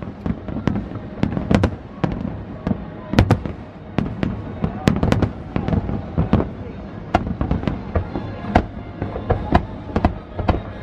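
Fireworks display: a rapid barrage of aerial shells bursting, several sharp bangs a second, overlapping one another.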